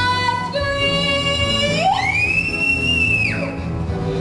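Girl's solo singing voice over musical accompaniment, holding notes, then sliding steeply up into a very high, long-held note that stops sharply about three and a half seconds in.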